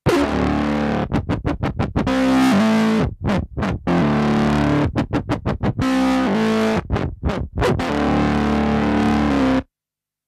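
Nord Lead 4 virtual analog synthesizer playing sustained chords with its LFO sweeping the filter, so the sound pulses rhythmically. The pulsing switches between fast and slower as Impulse Morph buttons change the LFO speed, and the sound cuts off abruptly near the end.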